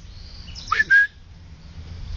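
A person's short whistle calling a dog: a quick upward slide, then a brief held note, about a second in. A steady low rumble runs underneath.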